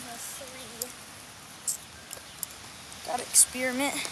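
Faint voices with no clear words, a few light clicks, and one sharp click or tap near the end.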